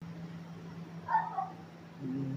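A short, meow-like vocal sound about a second in, over a steady low hum.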